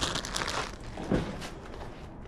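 Plastic bag crinkling as it is handled, dying away within the first second, followed by quieter rustling.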